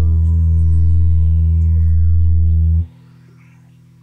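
The closing chord of a lo-fi rock song, held on guitar with bass at a steady level. About three seconds in, the low notes stop abruptly, leaving a much quieter tone ringing on.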